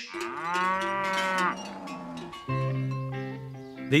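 A cow moos once, a long call of about two seconds that rises and then falls in pitch. About halfway through, light guitar music starts over a steady low note.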